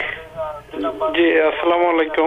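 A voice coming over a telephone line, thin and narrow-sounding, with no highs.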